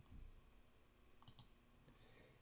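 Near silence: faint room tone with a few faint clicks from a computer mouse, a couple of them a little past a second in and one near the end.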